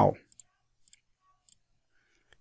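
A few faint computer mouse clicks, spread out, as an option is picked from a dropdown menu. The end of a spoken word is heard at the very start.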